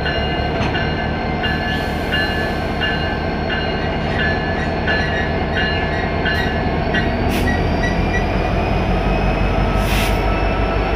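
Ferromex EMD SD70ACe diesel locomotive rolling slowly past with its engine running in a steady drone. A ringing, probably its bell, repeats about every 0.7 s and stops about seven and a half seconds in. A few sharp clanks sound along the way.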